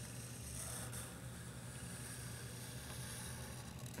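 Faint sound of a felt-tip marker drawing a line on paper, over a steady low hum.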